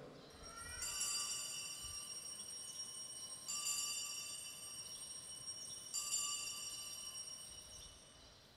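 Altar bells (Sanctus bells) rung three times, about two and a half seconds apart, each ring a bright cluster of high tones that fades away. They mark the elevation of the consecrated host just after the words of consecration.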